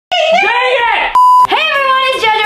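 A single steady, high electronic bleep tone lasting about a third of a second, cutting sharply into a drawn-out voice that carries on after it.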